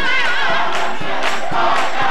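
Live gospel singing: a woman's voice carries a wavering run into a microphone at the start, over many voices singing along and regular hand claps about twice a second.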